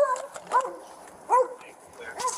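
Police K-9 dog giving a few short, high-pitched whining calls less than a second apart, each rising and then falling in pitch. The dog is eager to work.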